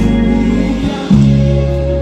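Live gospel band playing, heard close up from the stage: keyboards and bass holding sustained chords, with a louder new chord struck about a second in.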